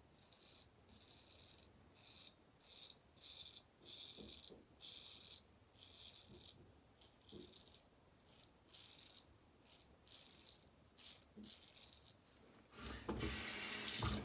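Hejestrand MK No 4 straight razor scraping through lather and stubble in a quick series of short, quiet strokes, a little more than one a second. A louder rushing noise comes in near the end.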